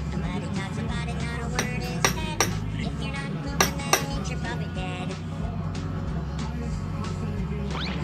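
Background music with a steady beat, and about five sharp clinks in the first half: a knife tapping the glass baking dish as it cuts slits in the soft rolls.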